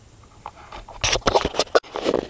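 A quiet first second, then a quick run of sharp clicks and scrapes as the camera is moved and handled. The chainsaw engine is not running.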